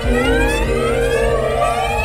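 Electronic dance music with a siren-like synth sweep rising in pitch over a steady bass.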